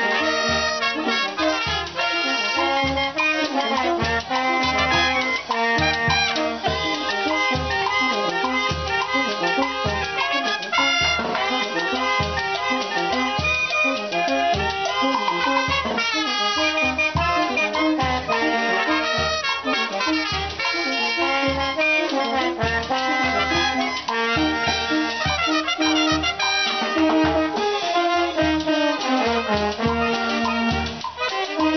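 Live street brass band playing a cumbia: saxophones and trumpets carry the melody over tuba and bass drum, with a steady beat.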